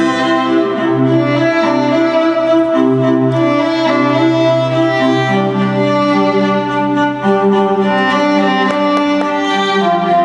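Recorded show music for a winter guard routine, played over loudspeakers: bowed strings in long held chords, the low notes shifting about halfway through.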